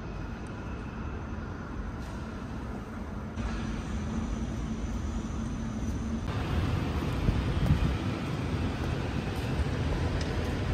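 City street ambience: a steady wash of traffic noise with a faint engine hum, changing abruptly at cuts and growing louder toward the end.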